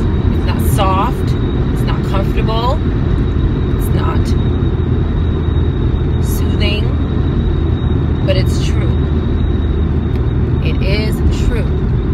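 Steady road and engine rumble inside a moving car's cabin, with a few short snatches of a woman's voice.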